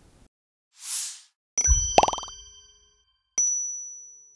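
Logo-animation sound effects: a short whoosh about a second in, then a sudden hit with a low boom, a quick upward glide and a bell-like chime ringing on several tones. A second chime ding comes near the end and rings on as it fades.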